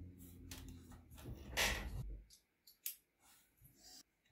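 Hands handling laptop parts around the heat sink: a few short clicks and a scraping rustle, the loudest about a second and a half in, then fainter clicks. A low steady hum stops about two seconds in.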